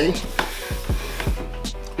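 Hip hop background beat with a regular bass-drum thump about twice a second, over the hiss of a cloth rubbing across a countertop for the first second and a half.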